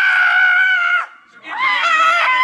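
A man screaming in mock fright: one high, held scream lasting about a second, then more screaming starting again about a second and a half in.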